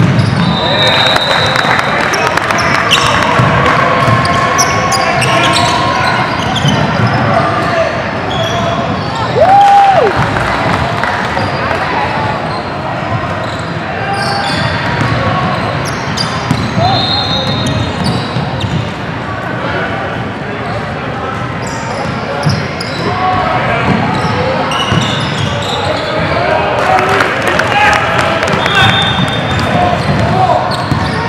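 Indoor basketball game: a ball dribbling on a hardwood court, sneakers squeaking, and players and spectators calling out, all echoing in a large gym hall. One loud held call stands out about ten seconds in.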